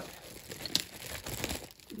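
Clear plastic bag crinkling as it is handled and opened, with irregular crackles and a few sharper ticks.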